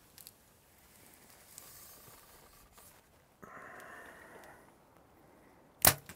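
A bow being shot: one loud, sharp crack of the string release near the end, after a few seconds of faint low rustling in the blind.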